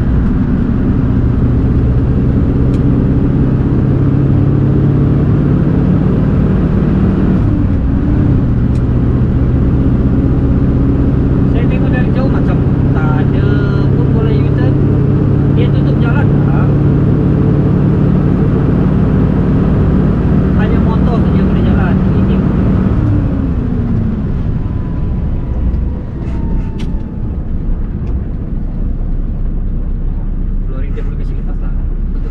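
Scania heavy truck's diesel engine pulling steadily, heard from inside the cab, with a brief break and change in the engine note about eight seconds in. About three-quarters of the way through, the engine note drops away and the sound gets quieter as the truck comes off the throttle.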